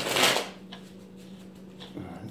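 Tarot cards being shuffled: one short papery rustle, about half a second long, right at the start.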